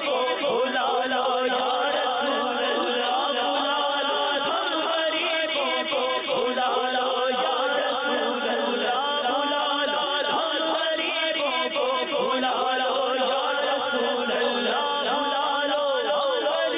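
Men's voices singing an Urdu devotional kalam (naat) without instruments, a continuous drawn-out, ornamented melodic line.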